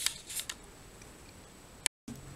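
A few faint, brief clicks and crinkles in the first half second, then quiet, then a sharp click followed by a short gap of dead silence at an edit cut near the end.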